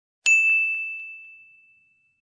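A single high bell-like ding sound effect, struck about a quarter second in and ringing out as it fades over about a second and a half, with a few faint echoing repeats.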